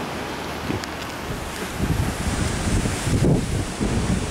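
Wind buffeting the microphone in irregular low gusts that grow stronger about halfway through, over a steady rushing hiss.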